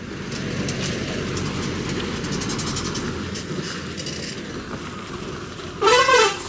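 An Ashok Leyland dump truck driving slowly on a narrow road: steady diesel engine and tyre noise, with a clattering rattle of loose metal from the truck's body.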